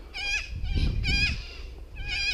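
An animal calling repeatedly: short, high, quavering cries about half a second apart, with a low rumbling noise underneath in the middle.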